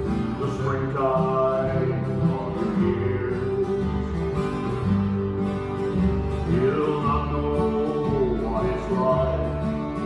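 Several acoustic guitars strummed together in a slow country song.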